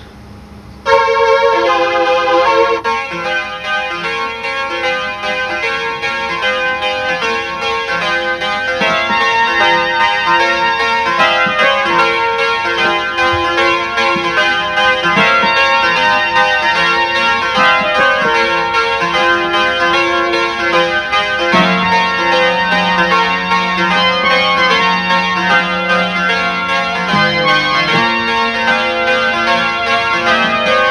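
Elka Synthex analogue polyphonic synthesizer playing a quick, continuous pattern of short notes from its built-in sequencer, starting about a second in. About two-thirds of the way through, a low held note joins underneath and moves to a higher pitch near the end.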